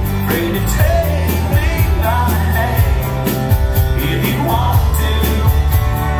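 Live country band playing with a male lead singer: acoustic guitar, electric bass and pedal steel guitar under the vocal, over a steady beat.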